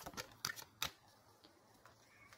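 A few faint clicks and taps of tarot cards being handled in the first second, then near silence.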